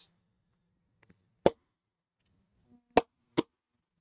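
Three sharp slaps of a ball of clay thrown down onto a pottery wheel head, about a second and a half apart and then two close together. The reclaimed clay is too dry and is being slapped down so that it sticks to the wheel head.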